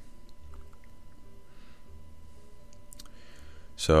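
HP desktop PC running as it boots, a steady low hum with a thin steady whine, and a few faint clicks about a third of a second in and again near three seconds.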